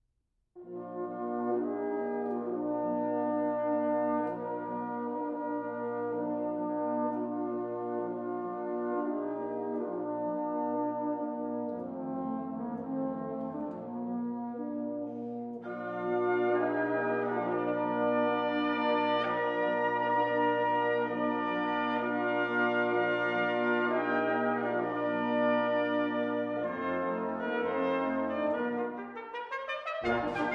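Brass band on original Civil War-era instruments playing an overture. After a brief silence the band comes in about half a second in with held chords over a steady bass, and the sound grows fuller and brighter about halfway through.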